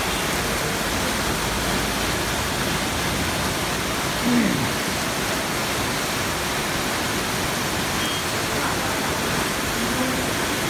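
Heavy rain and fast-flowing floodwater running through a street: a steady, dense hiss. About four seconds in, a brief louder sound falls in pitch.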